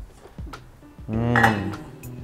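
A few light metallic clinks of a stainless-steel steamer pot, followed about a second in by a brief, louder vocal or musical sound.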